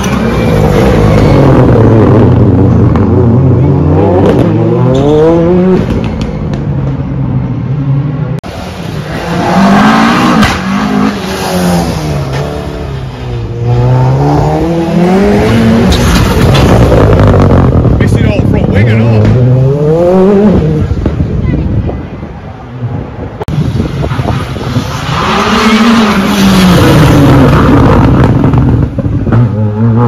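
Rally car engines being driven hard past the spectator, running loudly, with the pitch rising and falling again and again through gear changes. Several cars pass one after another, with short lulls between them.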